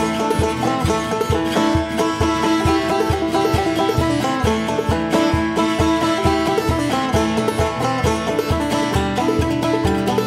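Instrumental old-time string band music: banjo picking the tune over a steady, even low beat, with no singing.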